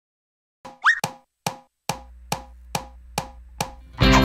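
Cartoon intro sound effects: a quick rising whistle, then a steady run of seven wood-block taps a little over two a second, with a low hum joining halfway, leading straight into the song's music.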